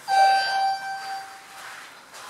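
Elevator arrival chime: one electronic ding that fades away over about a second and a half, signalling that the car has arrived at the floor.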